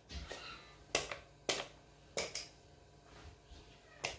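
About five sharp clicks and knocks, the loudest near one, one and a half and two seconds in, with faint low hum between them: handling noise with a small-room sound.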